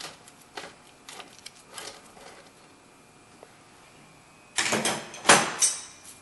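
Light clicks of the battery hold-down bolt being turned out by hand, then a louder scraping rustle of about a second, starting some four and a half seconds in.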